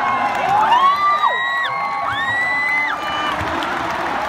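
Stadium crowd cheering, with several long whoops that rise and are held for about a second each, mostly in the first three seconds, over a steady crowd din.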